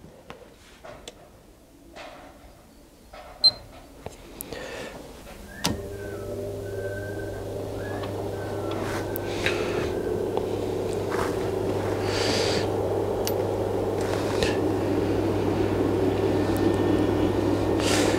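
A few light clicks and knocks, then about six seconds in a 2000 W pure sine wave inverter switches on with a click. It runs with a steady electrical hum and a fan whir that grows slowly louder.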